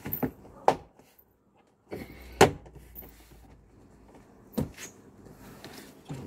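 Plastic clips of a BMW E90 rear door trim panel snapping and knocking into the door as the panel is pressed on. A handful of sharp knocks, the loudest about two and a half seconds in.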